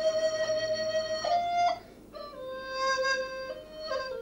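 Slow background music of long, held, wind-like notes. A note sustains for about a second and a half and steps up briefly, breaks off just before two seconds in, then a higher held note follows, and a lower note starts near the end.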